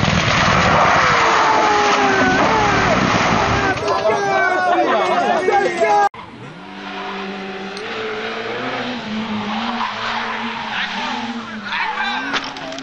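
Rally car engines under hard acceleration with tyre squeal and skidding as the cars slide through bends. About six seconds in, the sound cuts abruptly from a loud, noisy passage to a quieter engine whose pitch rises and falls in steps.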